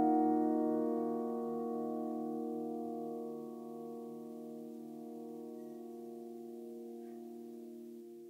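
Closing piano chord of the song, held and slowly fading away.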